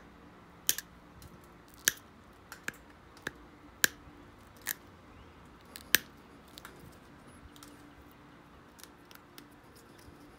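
Obsidian knife edge being pressure-flaked with a pointed hand tool to sharpen it: a series of sharp, irregular clicks as small flakes snap off, about a dozen in the first seven seconds, then only faint ticks.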